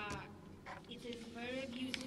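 A woman's voice speaking faintly, low in the mix, with a drawn-out vowel in the second half.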